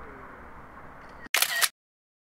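Faint background noise, then about a second and a half in, a short, sharp camera-shutter click sound effect added in editing, cut in against dead silence.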